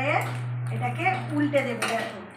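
A steel plate clinks against metal as it is set down as a cover over banana-leaf parcels on the stove, the sharpest clink near the end. A voice talks briefly over a steady low hum.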